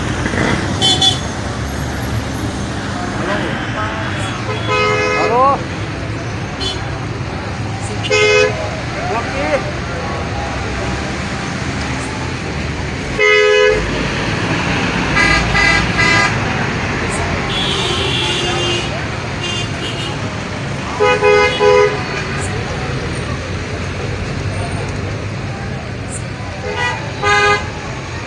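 Slow, dense road traffic with car horns honking again and again in short blasts, the loudest blast about halfway through, over a steady bed of engine and road noise.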